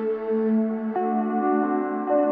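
Ambient new-age background music of sustained, held tones, moving to a new chord about a second in.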